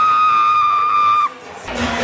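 A high, steady whistle tone held over party music, cutting off suddenly about a second and a quarter in.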